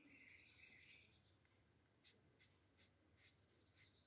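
Faint scratching of a felt-tip marker colouring on paper: one longer stroke in the first second, then a few short, quiet strokes.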